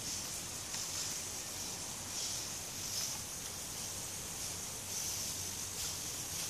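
Hobby servos of a 3D-printed hexapod robot whirring faintly as it tilts its body in place, the high-pitched whir swelling and fading several times over a steady hiss.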